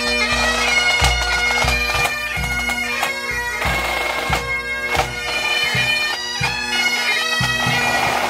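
Highland pipe band marching and playing: massed bagpipes sounding their steady drone under the chanter melody, with snare and bass drums beating a steady march rhythm.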